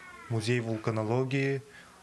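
Speech only: a young man speaking a short phrase, with brief pauses near the start and end.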